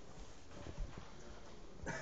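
Faint room tone in a short pause in a man's speech, with a few soft, low thumps.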